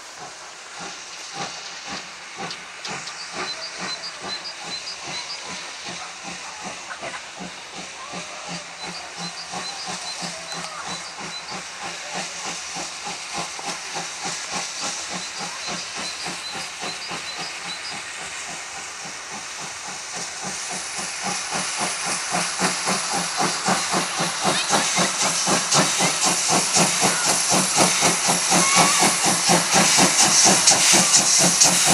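Class 52 two-cylinder 2-10-0 steam locomotive pulling away with its train: rhythmic exhaust chuffs over hissing steam from the open cylinder drain cocks. The sound grows steadily louder as the engine gets under way and comes close by.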